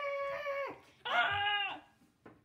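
A child's voice making two long, high, drawn-out cries with no words, the second a little louder than the first.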